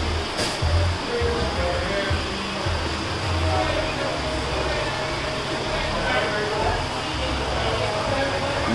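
Large aluminium pot of mutton at a rolling boil: a steady bubbling hiss, with uneven low bumps underneath and faint voices in the background.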